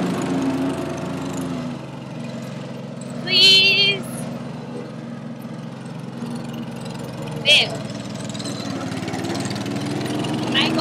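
Riding lawn mower engine running steadily. A short, loud, high-pitched squeal comes about three and a half seconds in, and a briefer one about seven and a half seconds in.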